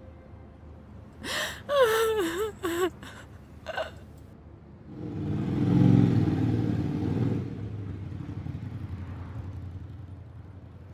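A woman sobbing in wavering, breaking cries for about two seconds, with two short gasping sobs after. Then a motorcycle engine comes in about five seconds in, is loudest as it passes, and fades as it rides away.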